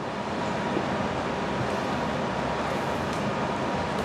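Steady background noise: an even hiss with a low hum, with a few faint clicks from typing on a laptop keyboard.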